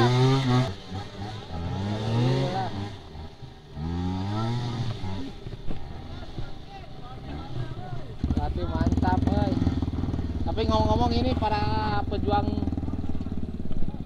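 Trail motorcycle engines revving in short rising bursts as a bike is ridden up a muddy rut. From about eight seconds in, a nearby engine runs steadily with fast, even firing pulses.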